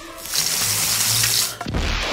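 A loud, steady hiss like sizzling as an ear of corn heats in a fire, its kernels about to pop. A low thump follows near the end.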